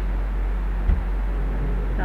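Steady low hum with a faint hiss of background noise, and a single short click about a second in.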